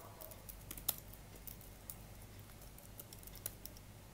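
Typing on a laptop keyboard: faint, irregular keystrokes, one slightly louder about a second in, over a low steady hum.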